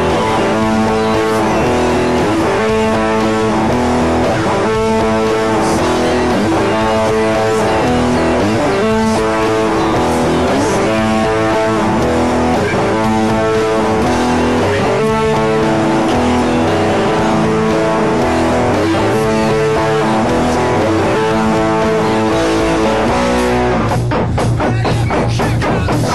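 Electric guitar playing a rock riff that repeats about every two seconds, moving to a low held note near the end.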